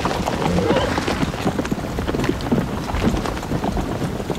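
Horses' hooves clattering: a dense, continuous run of quick hoofbeats.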